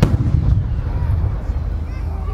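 An aerial fireworks shell bursting with one sharp bang right at the start, followed by a low rolling rumble of its echo that fades over about a second and a half.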